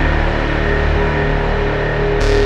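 Behringer DeepMind 6 analogue polyphonic synthesiser playing ambient music: layered sustained tones over a deep low end, all from the synth with its own onboard effects. The notes come from LFO-triggered looping envelopes and heavy cross-modulation, not from a sequencer or arpeggiator.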